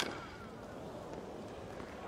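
A single crack of a tennis racket striking the ball right at the start, followed by faint, steady arena ambience.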